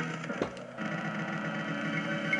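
Game audio from a Hokuto no Ken pachislot machine during its screen presentation between spins. There is a click about half a second in, then a steady low droning effect sound.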